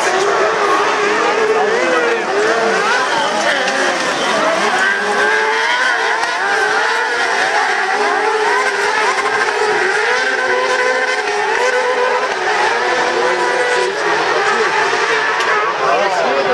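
Several crosscart engines of up to 600 cc racing together, each revving up and down so that their pitches rise, fall and overlap continuously.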